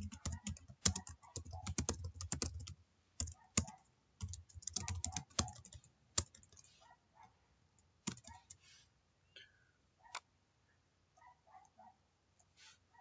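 Typing on a computer keyboard: fast runs of keystrokes through the first half, then scattered single key presses that thin out near the end.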